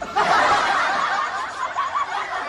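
Laughter from several overlapping voices, starting suddenly.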